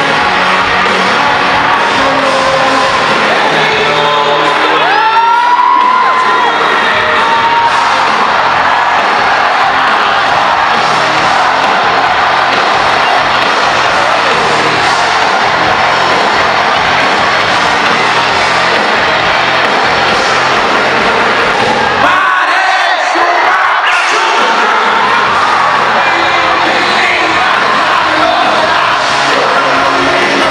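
Live band music playing loud in a packed hall, with the crowd cheering and whooping over it. A rising whoop cuts through about five seconds in, and the bass drops out briefly a little after the twenty-second mark.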